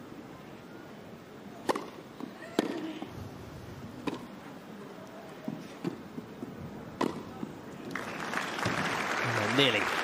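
Tennis racket strikes on the ball in a rally on a grass court: five sharp hits about a second or so apart. Crowd applause builds near the end as the point finishes.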